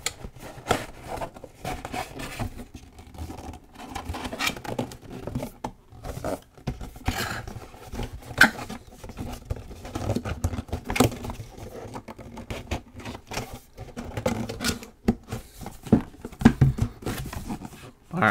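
Cardboard diorama wall pieces being folded and handled: repeated scrapes, rubs and light taps of cardboard, with a few sharper knocks.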